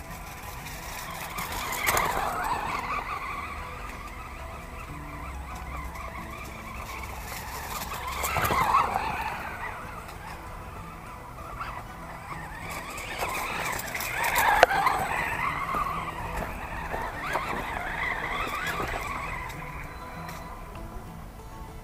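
Axial Exo Terra RC buggy's 3200kv brushless motor whining as it is driven on easy throttle over dirt, its pitch rising and falling with each burst of speed. It is loudest in three passes: about 2 seconds in, about 8 seconds in and about 14 seconds in.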